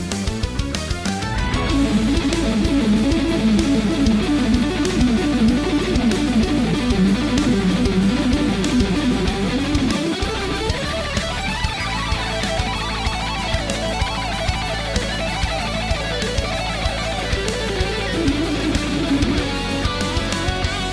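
Ibanez electric guitar played fast, in rapid runs of notes, with a brief break in the low notes about ten seconds in.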